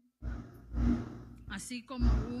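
A speaker's audible intake of breath into a podium microphone in a pause between spoken phrases, over a faint low murmur.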